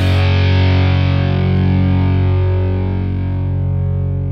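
Pop-punk band recording: a distorted electric guitar chord is held and left ringing after the rest of the band stops just before, slowly fading as its brightness dies away.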